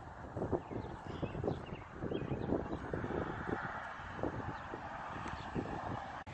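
Outdoor wind noise on the microphone with scattered light taps and knocks at irregular intervals.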